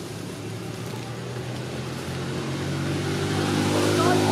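A motor engine running steadily off-camera, its hum growing louder through the second half.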